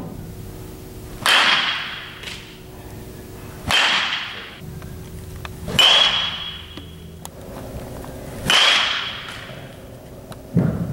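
Baseball bat hitting pitched balls during batting practice: four sharp cracks, each with a brief ringing tone, coming every two to three seconds, with fainter knocks between them.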